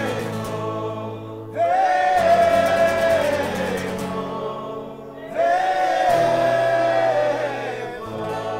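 A group of men singing a Chassidic niggun together, with a strummed Takamine acoustic guitar. New sung phrases begin about a second and a half in and again about five seconds in.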